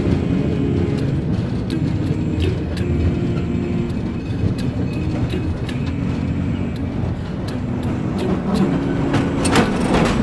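Steady low rumble of a moving gondola cable car heard from inside the cabin, with scattered light clicks and rattles that come thicker near the end.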